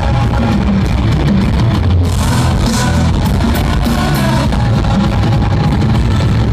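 Live rock band playing loud, with distorted electric guitars and a drum kit keeping a steady beat, recorded from within the crowd.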